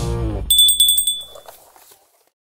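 A short ringing bell sound effect: a rapid trill of metallic strikes with a high ringing tone that starts about half a second in and fades out near the end, as the background music dies away.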